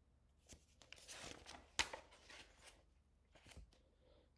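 Paper rustling as a picture-book page is turned and flattened, with one sharp crackle of the page near the middle.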